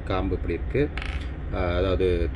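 A man speaking, with a short noisy rustle about halfway through as a hand moves among the beads and fruits on the table, over a steady low hum.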